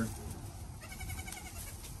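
A goat kid bleats once, a short high-pitched cry about a second in.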